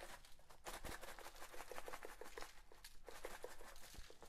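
Faint, irregular pattering and ticking of a plastic spice shaker being shaken, its seasoning falling on raw ribs and the aluminium foil under them.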